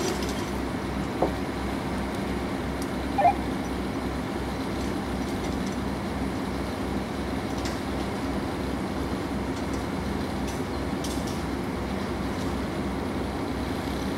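A crane's engine running steadily: a low drone with an even pulse. There is a short click about a second in and a brief, sharper sound about three seconds in.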